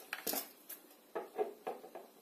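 Double-sided red tape being pulled off its roll and pressed onto thin kraft card, a few short crackles and rustles with small taps from handling the card.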